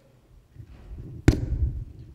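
Microphone handling noise: a low rumble with one sharp knock a little past a second in.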